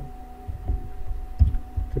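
Computer keyboard being typed on, heard as a few irregular dull thuds with faint clicks, picked up through the desk by the microphone. A faint steady electrical hum runs underneath.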